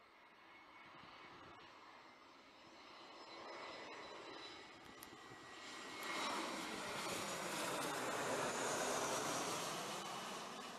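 Airbus A320-family twin-jet airliner on final approach with gear down, passing low overhead. Its engine noise builds steadily and swells to its loudest about six seconds in as it goes over. A faint high whine slides down in pitch, then the noise begins to fade near the end.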